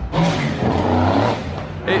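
A car with a very loud, noisy exhaust accelerating past, its deep engine note gliding up and down before fading near the end.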